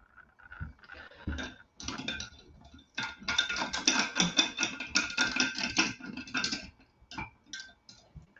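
A quick run of light clicks and taps, like small objects being handled, lasting about three and a half seconds, with scattered clicks before and after.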